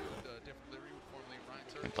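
Faint broadcast audio of a drift car's run, mostly a commentator's voice with vehicle noise underneath.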